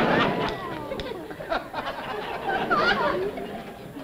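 Voice sounds without clear words, with scattered short clicks, fading toward the end.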